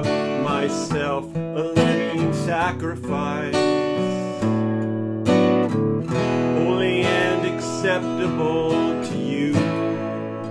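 A man singing a worship song while strumming chords on an acoustic guitar.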